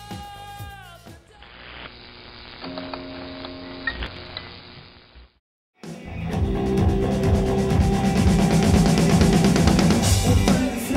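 Music throughout: first a song whose pitch slides down as it winds to a stop, then a muffled, thin-sounding passage, a brief silence about five seconds in, then a rock band playing loud with drums and electric guitar.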